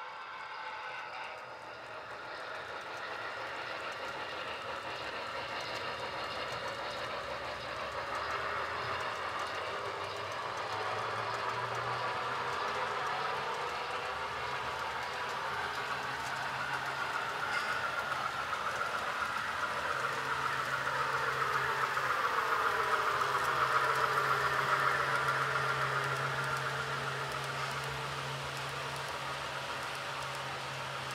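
HO scale model trains running past on the layout, their wheels rolling along the track with a steady low hum. The sound grows louder through the middle and eases toward the end.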